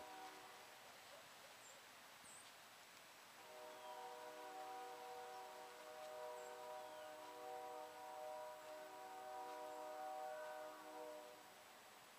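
Distant train horn blowing long blasts, several steady tones sounding together, starting about three and a half seconds in and stopping about a second before the end, with a few short breaks. A few faint high chirps sound in the quiet woods around it.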